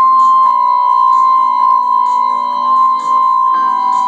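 Portable electronic keyboard playing sustained chords under a held high note, moving to a new chord about three and a half seconds in, over a light tick about twice a second.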